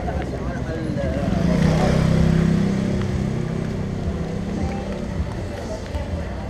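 A motor scooter passes close by, its small engine note swelling to a peak about two seconds in and then fading away, over street noise with faint voices and music.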